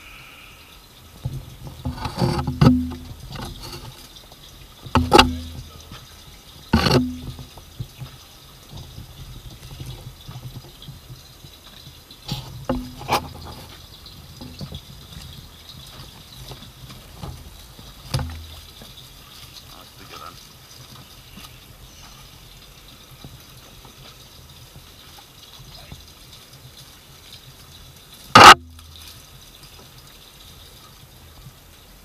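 Sharp knocks and water slaps on a small fishing boat at sea, about half a dozen spread out, with the loudest near the end, over a low steady hum.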